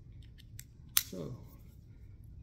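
A single sharp plastic click about a second in from the quick-release mount of a Telesin magnetic neck holder being worked by hand, with a few faint handling ticks before it.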